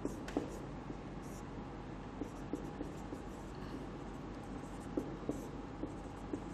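Marker pen writing on a whiteboard: faint, short, irregular strokes as words are written out.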